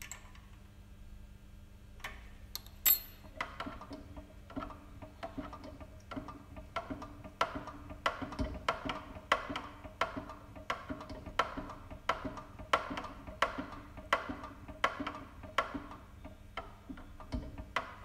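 Hand pump of a dead-weight pressure gauge tester being worked, giving a steady run of clicks about two to three a second as oil pressure builds to lift the plunger and weights. One sharper click comes about three seconds in.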